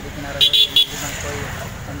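Three quick, high-pitched toots of a vehicle horn in close succession, about half a second in.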